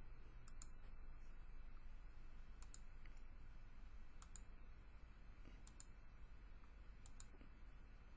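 Faint computer mouse clicks, in pairs about every second and a half, over a low steady hum.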